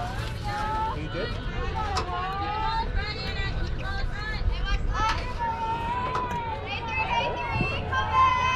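Players' high voices chanting and shouting cheers across a softball field, several voices overlapping with some held, sung-out notes. A few sharp knocks stand out, the clearest about two seconds in.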